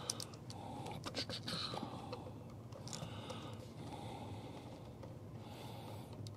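Faint scattered clicks and scrapes of stiff electrical wires and a wall outlet being handled and pulled out of the electrical box, bunched in the first second and a half and again about three seconds in. Breathing close to the microphone and a low steady hum run underneath.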